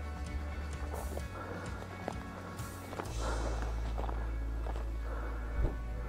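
Footsteps and rustling of dry grass and brush as someone pushes through on foot, with a few sharper swishes and snaps of twigs, over music playing underneath.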